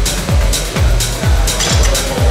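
Electronic dance music with a steady, driving kick-drum beat, a little over two beats a second.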